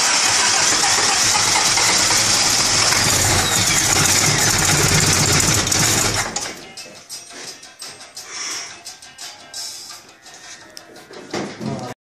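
Carburetted car engine running loud and rough with a strong hiss while worked by hand at the carburettor, then the sound drops away sharply about six seconds in. The engine has large vacuum leaks that have not yet been found.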